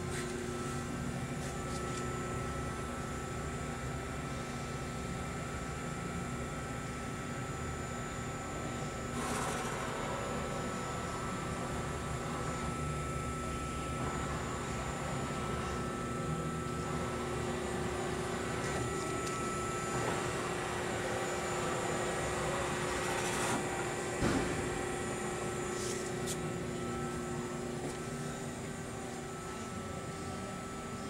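Steady hum of running machinery with a few constant tones, broken by brief rushing swells about 9 s and 23 s in and a single knock shortly after the second.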